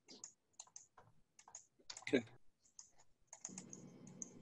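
Faint, irregular computer keyboard typing and clicking, with a short vocal sound about two seconds in.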